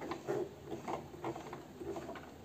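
Singer Promise 1412 sewing machine making a series of light mechanical clicks, a few each second, as the buttonhole stitching is finished.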